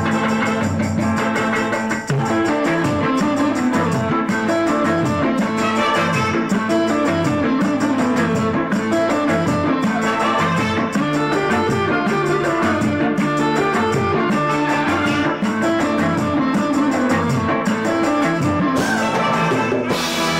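Live band playing with electric guitar, bass guitar and drum kit keeping a steady beat.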